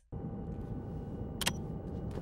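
Steady low rumble of a jet aircraft's engines heard in the cockpit, with a single sharp click about a second and a half in.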